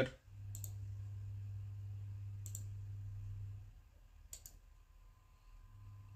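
Three computer mouse clicks, about two seconds apart, picking the points of a linear dimension in CAD software. A steady low hum runs under the first two clicks and stops about three and a half seconds in.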